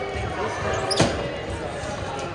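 A single sharp smack of a volleyball about a second in, echoing through a large gym hall, over people talking.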